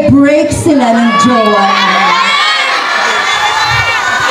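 A crowd cheering and screaming, many high voices overlapping, swelling about a second in.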